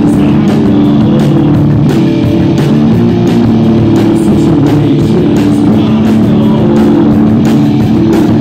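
Live grunge/alternative rock band playing loud: distorted electric guitar, bass guitar and drum kit, with held, droning chords over steady drum hits. Heard through a phone's microphone, loud throughout.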